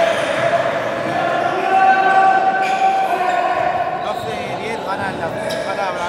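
Basketball game in an echoing sports hall: a ball bouncing on the court amid the voices of players and spectators.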